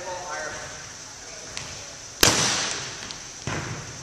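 A volleyball struck hard a little over two seconds in, a sharp smack ringing in the gym, then a softer ball contact about a second later. A brief voice near the start.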